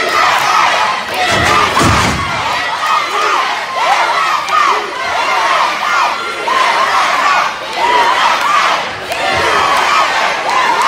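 Wrestling crowd shouting and cheering, many voices calling out at once, with a low thump about a second and a half in.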